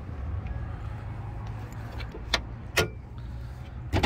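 Two sharp metallic clicks from a pickup truck's hood latch being released and the hood lifted, about two and a half seconds in and half a second apart, over a steady low rumble.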